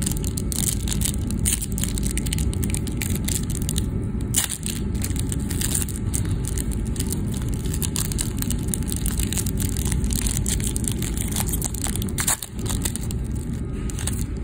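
Foil wrapper of a trading-card pack crinkling and crackling in rapid, irregular bursts as it is torn and peeled open by hand, over a steady low rumble.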